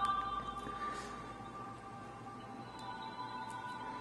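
Background music of an HTML5 browser demo playing from a Samsung Galaxy Nexus phone's speaker: a few steady held tones that get quieter over the first two seconds as the volume is turned down, then carry on faintly.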